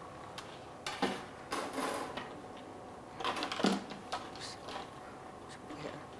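Light clatter and knocks of kitchenware being handled on a countertop: a few short clicks and rattles in the first four seconds, then quieter.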